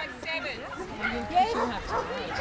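Dogs barking and yipping in quick, short calls, mixed with voices.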